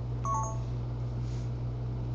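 A brief electronic alert, a few short beeps stepping down in pitch, about a quarter second in, over a steady low electrical hum.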